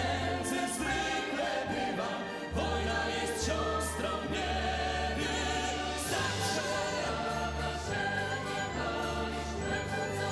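Large mixed choir singing with a symphony orchestra, woodwinds and brass among it, over steady low bass notes that change every second or so.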